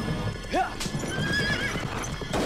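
A horse whinnying: one rising call about half a second in that turns into a shrill, wavering cry, over the clatter of hoofbeats, with film score music underneath.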